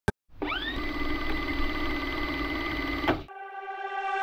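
A click, then a machine-like whine that rises in pitch and holds steady for about three seconds before cutting off, followed by a steady pitched tone: an intro sound effect ahead of the track.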